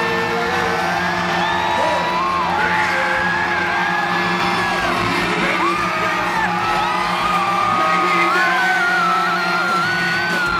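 Live reggae-rock band playing loud: a male lead vocal sings long, sliding phrases over bass guitar and the rest of the band, coming through the venue's PA.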